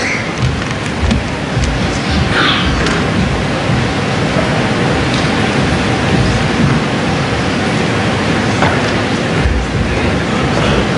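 An audience applauding steadily: a dense, even clatter of many hands clapping, as loud as the speech around it.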